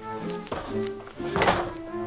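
Background music with sustained notes, and a wooden door being shut with a single heavy thunk about one and a half seconds in.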